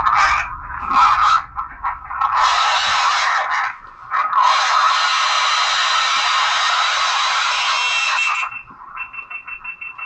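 Recorded screaming played back through a small handheld device's speaker: loud, harsh and thin, in a few short bursts and then one long stretch of about four seconds, followed near the end by a quick run of short pulses.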